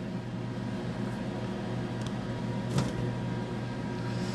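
Steady low electrical hum of running lab equipment, with one light click about three seconds in.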